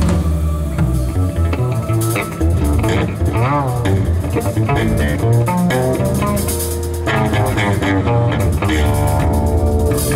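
Live jazz band playing: a plucked double bass walking in the low end under drum kit and a melody line with bent, wavering notes.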